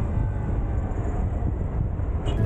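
Motorcycle in motion heard from a camera mounted on the bike: a low, steady engine and road rumble with wind rush on the microphone.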